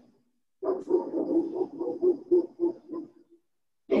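A dog barking: a rapid run of short barks, about four a second, lasting nearly three seconds.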